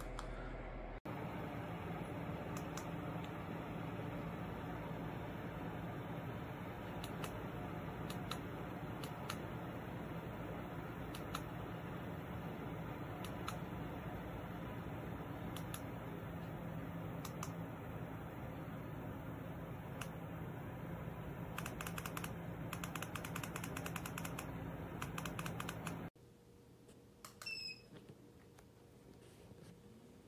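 Orison low-profile bladeless ceiling fan running with a steady airy whir and a low hum, with scattered light clicks and a quick run of clicks late on.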